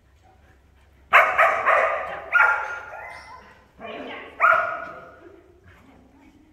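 A dog barking excitedly during an agility run: a quick string of barks about a second in, then two more near the middle, echoing in a large hall.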